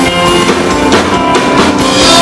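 A live pop band with drum kit, bass, keyboard and guitars playing an instrumental passage between sung lines, with the kick and snare drums loud in the mix.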